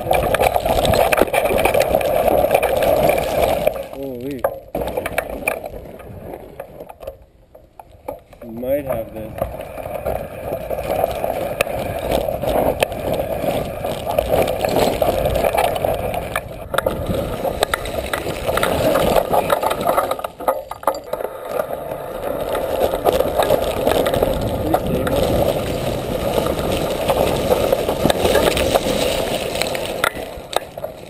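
Mountain bike riding down a loose, rocky trail, heard from a camera mounted on the bike: steady crunch of tyres over rock, rattling of the bike and rushing wind noise. The noise eases off twice, briefly about four seconds in and for a longer spell around seven to nine seconds in.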